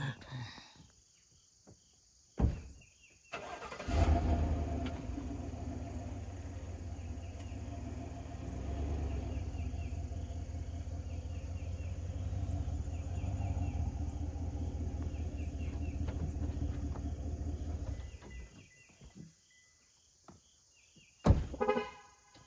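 A Chevrolet pickup truck's engine starts about four seconds in, idles steadily, and is switched off about eighteen seconds in.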